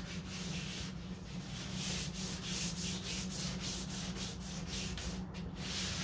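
Hand wet-sanding of a 1969 Corvette's fiberglass hood: wet sandpaper rubbed back and forth over the panel in an even rhythm of about three strokes a second. A steady low hum runs underneath.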